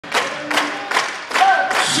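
Congregation clapping on the beat, about two to three claps a second. Singing and instruments of a church worship song begin under the claps.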